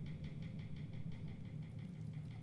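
Soft drumstick taps in an even rhythm of about five a second over a low steady hum, a quiet passage of the percussion.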